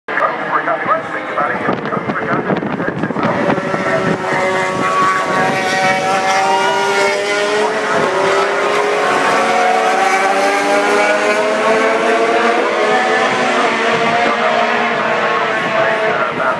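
MotoGP racing motorcycles running on the circuit, heard from the grandstand. Their high engine notes rise and fall with throttle and gear changes, and several bikes overlap from about three seconds in.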